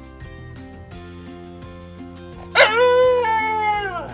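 A Hokkaido dog gives one loud, drawn-out howl about two and a half seconds in, held a little over a second and dropping in pitch as it ends.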